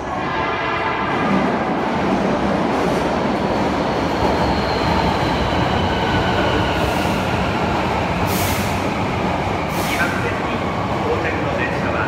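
Hankyu 7300 series electric train running into an underground station platform and braking: a loud, steady rumble of the cars and wheels on the rails, with a faint whine that falls in pitch as it slows. Several short hissing bursts come in the later seconds.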